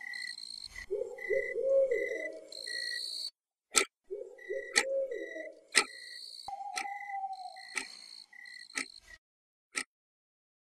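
Night ambience of frogs croaking, a steady repeating chirp and a single falling hoot. A few seconds in, a wall clock starts ticking once a second, and near the end the ticking is heard alone.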